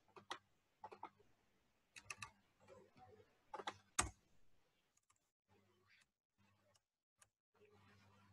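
Faint, scattered clicks of a computer keyboard and mouse, a few single clicks and a quick cluster in the first four seconds, the sharpest about four seconds in, over a faint low hum.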